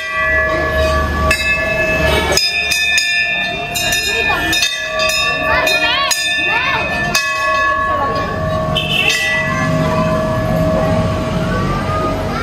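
Hanging brass temple bells struck again and again, several clangs close together through the first half and fewer after about seven seconds. Their overlapping ringing tones linger and fade between strikes, with people's voices underneath.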